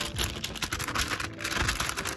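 Thin Bible-paper pages of an ESV Thinline Bible being fanned rapidly close to the microphone: a quick, dense run of crisp paper flicks and rustles. The light, papery crackle is the sign of very thin paper.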